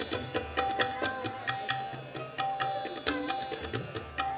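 Hindustani classical instrumental music: a plucked string instrument playing a steady stream of notes with tabla accompaniment, the bass drum strokes swelling low beneath it.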